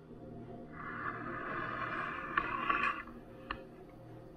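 A Siberian husky licking herself for about two seconds, starting just under a second in, with a few faint clicks near the end. The licking is one of the signs of her first stage of labor.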